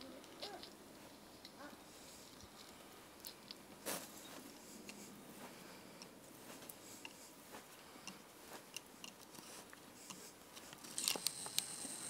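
Increment borer being hand-turned into a standing ash trunk: faint, scattered crunching clicks as the bit bites into the wood, with a louder run of clicks near the end.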